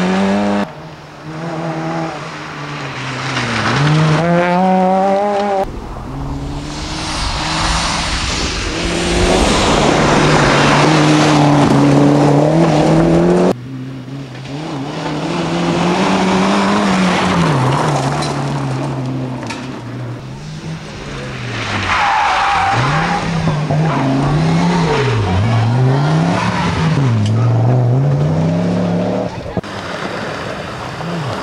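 Rally cars passing at speed, engines revving hard, their pitch climbing and dropping again and again with gear changes and lifts off the throttle, over tyre and gravel noise. The sound breaks off suddenly a few times as one car gives way to the next.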